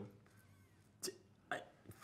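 A near-silent room broken by two brief, clipped sounds from a man's voice, about a second in and half a second later: stammered, cut-off syllables.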